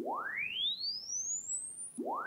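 A linear sine-wave sweep from an Analog Discovery waveform generator played through a speaker. A single pure tone rises from a low tone to a very high whistle over two seconds, climbing fast at first and then more slowly.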